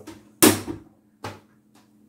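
Small perspex door of a wooden-frame tank snapping shut on its magnet catch: one sharp clack about half a second in, then a lighter knock about a second later.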